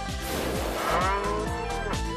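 A cow mooing sound effect, one long drawn-out moo that falls in pitch near the end, played over background music with a steady beat.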